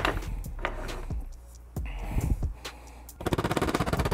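Hand tools clicking and knocking against a metal LED daytime-running-light module housing as it is pried apart, with a few sharp knocks early on. Near the end comes a fast, even run of fine clicks.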